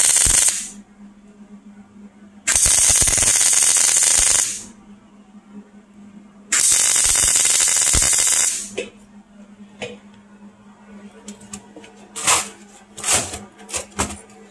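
MIG welder arc crackling loudly in three bursts of about two seconds each while welding stainless steel: the first stops about half a second in, and the others run from about 2.5 to 4.5 s and 6.5 to 8.5 s. A low steady hum fills the gaps, and a scatter of sharp clicks and knocks follows in the last few seconds.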